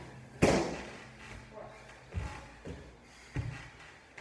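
Feet landing on a wooden plyo box during box step-ups: one loud thud about half a second in, then three lighter thumps in the second half.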